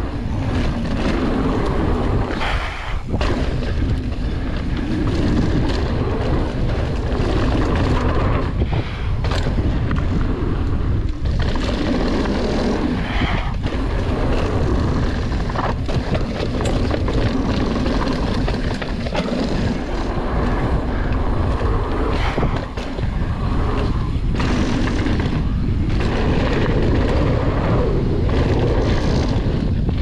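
Wind buffeting a bike-mounted camera's microphone as a mountain bike rides fast down a dirt trail, with its knobby tyres rolling on the dirt and occasional knocks as the bike goes over bumps. The noise stays loud and steady apart from a few brief dips.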